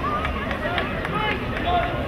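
Several voices shouting and calling out over one another from the players and sideline at a lacrosse game, with no clear words.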